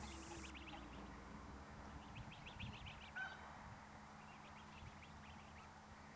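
Near silence with faint, brief bird calls: a quick run of short chirps a couple of seconds in, another single chirp soon after, and a few more faint ones later.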